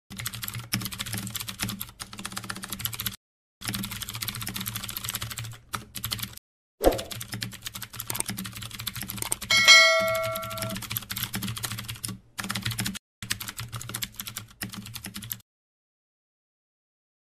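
Rapid computer-keyboard typing clicks in runs broken by short pauses, used as a text-writing sound effect. A single thump comes about seven seconds in. A bright bell ding rings for about a second near the ten-second mark, like a notification bell. The typing stops shortly before the end.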